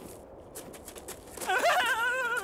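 Faint scuffing and small clicks, then about one and a half seconds in a character's voice breaks into a loud, wavering, bleat-like wail.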